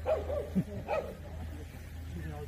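Jindo dog barking: about four short barks in quick succession in the first second, then dying down.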